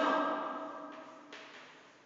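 Chalk writing on a blackboard: faint scratchy strokes, the first about a second in and another about half a second later, after the reverberant end of a woman's voice dies away.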